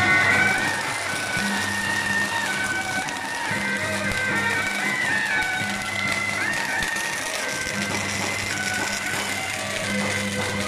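Beiguan processional music: a shrill wind melody, typical of the suona, of held notes that slide from pitch to pitch, over a low intermittent hum.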